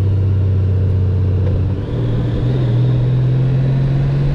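2018 Honda Gold Wing's flat-six engine running at road speed. Its steady low note steps up in pitch a little under two seconds in and again shortly after.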